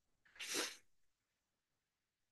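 A man's short, soft breath in, about half a second long, a few tenths of a second in, between phrases of speech; otherwise near silence.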